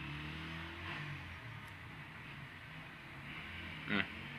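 Faint scratching of a calligraphy pen drawing ink strokes on paper, over a low steady hum.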